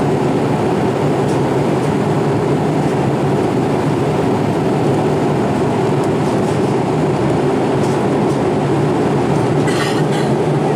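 Steady rushing cabin noise of a Boeing 787-8 Dreamliner in cruise, heard from inside the passenger cabin: constant airflow and engine noise with no change in pitch.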